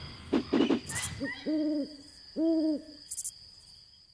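An owl hooting twice: two long, steady, low hoots about a second apart. A brief rustle comes just before them.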